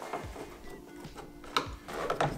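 Faint background music with a few light clicks, one sharper near the end, as a Torx screwdriver turns the screw of a sliding door handle.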